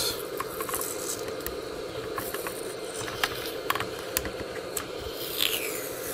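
Hot-air heat gun wand blowing steadily while softened adhesive residue is scraped and peeled from a plastic computer case, giving scattered small clicks and scratches over the steady rush of air.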